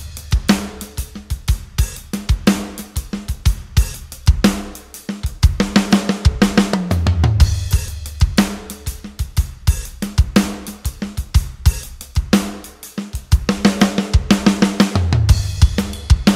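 Sampled acoustic rock drum kit (Hertz Drums plugin) playing a steady groove of kick, snare, hi-hat and cymbals, with a low drum fill about seven seconds in and again near the end. The kick drum's maximum velocity is being turned down, so its hits come from the softer sample layers for a more relaxed, laid-back feel.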